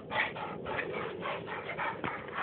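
Dog panting fast, a rhythmic raspy breathing of about five or six breaths a second.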